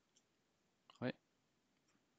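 A few faint, sharp computer keyboard keystrokes, spaced apart, with a short spoken exclamation about a second in.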